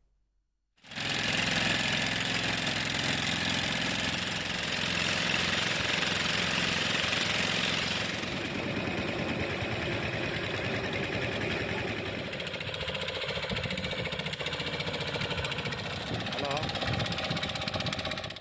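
Outboard motors of small fishing boats running steadily under way: a rapid, even engine knock with a steady hiss over it. It starts abruptly about a second in.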